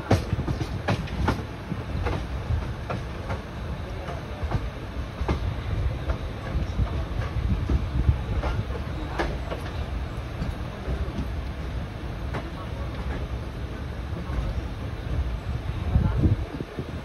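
Passenger train running along the track: a steady low rumble of the coach with irregular clicks and knocks as the wheels pass over rail joints and points.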